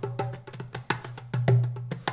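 Recorded percussion played back uncompressed, with the glue compressor bypassed: rapid sharp hand-percussion strikes, several a second, with a pitched low drum ringing under some of them.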